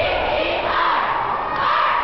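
Many voices shouting and cheering at once, with drawn-out yells that rise and fall over a steady crowd noise.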